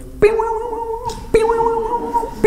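A man's voice imitating a kangaroo bouncing: two drawn-out "boing" sounds about a second apart, each starting sharply and held on one pitch.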